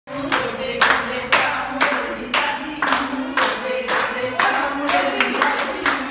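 A group of women clapping their hands in a steady beat, about two claps a second, keeping time for a giddha, the Punjabi women's folk dance. Women's voices sing along under the claps.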